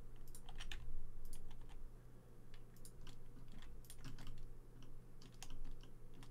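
Computer keyboard keys pressed in short, irregularly spaced clicks, single keystrokes rather than continuous typing.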